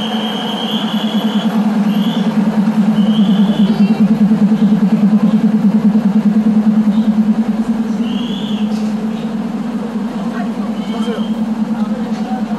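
Diesel railcar engine running close by as the train creeps past, a low pulsing drone that swells in the middle and eases off, with several short high-pitched squeals over it.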